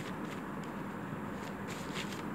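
A deck of oracle cards being shuffled by hand: soft card-on-card rustling with a few faint clicks near the end, over a steady background hiss.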